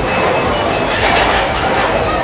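Loud, continuous funfair din: a running thrill ride's machinery rumbling and clattering, mixed with music and crowd noise.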